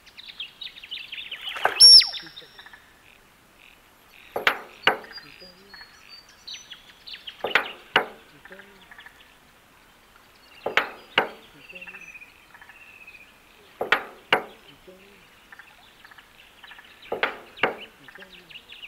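Male musk duck's display: a single piercing whistle about two seconds in, the loudest sound, then pairs of loud knocks about half a second apart, repeating five times at roughly three-second intervals. Faint, fast chirping runs underneath.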